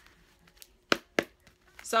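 Two sharp taps about a third of a second apart from a deck of cards being handled against the table.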